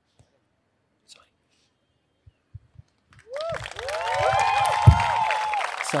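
A few seconds of near silence with faint clicks, then an audience breaks into applause with whoops and cheers that rise and fall in pitch. A single thump sounds near the end.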